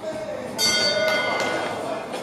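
Boxing ring bell rings about half a second in and fades over roughly a second, signalling the start of the round.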